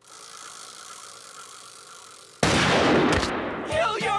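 A faint steady hiss, then about two and a half seconds in a single sudden loud pistol shot whose noise trails off over about a second.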